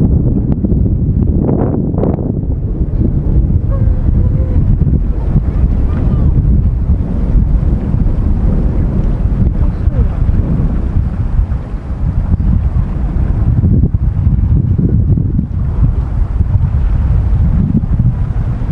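Wind buffeting the microphone: a loud, gusty low rumble that dips briefly about twelve seconds in.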